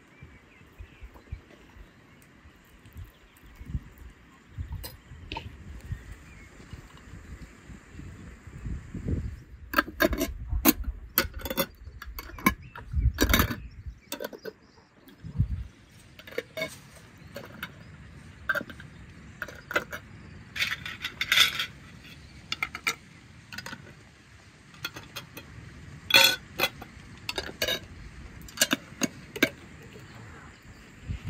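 Metal screw lids being put on and turned onto glass jars packed with raw beef: many sharp clinks and clicks of metal on glass, with a few short scraping turns. Before that, quieter handling of the jars and meat.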